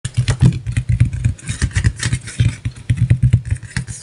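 An engine running with a rapid, uneven pulsing beat.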